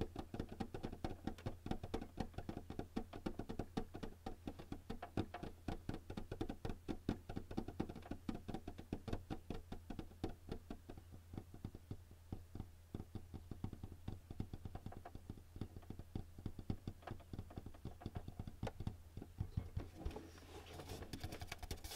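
Fingertips tapping rapidly and steadily on the plastic top of a Canon all-in-one printer, many light taps a second.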